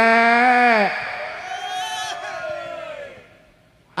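Amplified male singer holding out the last note of a sung gambang kromong line, ending with a downward slide about a second in. Fainter accompaniment with sliding pitches follows, fading almost to silence near the end.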